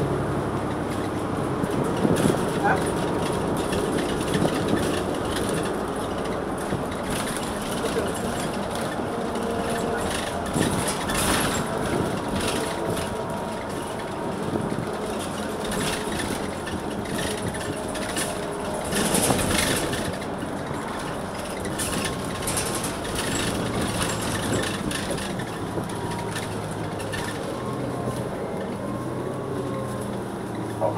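Cabin sound of a 2016 New Flyer XN40 bus: its Cummins Westport ISL-G natural-gas engine and Allison B400R transmission running steadily under the body noise, with rattles and louder knocks about 2, 11 and 19 seconds in.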